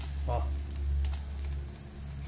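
Cubes of coalho cheese sizzling softly in a cast iron skillet, with a few light clicks of tongs picking up a browned cube. A steady low hum runs underneath.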